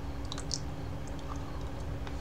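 A few faint, scattered mouth clicks and lip smacks while tasting a hot chili, over a steady low hum.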